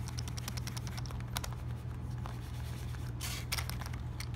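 Stacked poker chips in a paperboard chip box clicking lightly against each other and the insert dividers as fingers push on the stacks to test how snugly the box holds them: a run of small clicks in the first second and a half, then a brief scraping rustle near the end.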